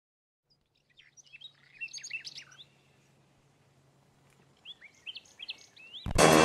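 Small birds chirping: a cluster of short, quick high chirps about a second in, then another near the end, over a faint steady low hum.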